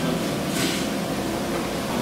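Steady hum of air conditioning and a ceiling fan in a small dining room, with a brief rustle about half a second in.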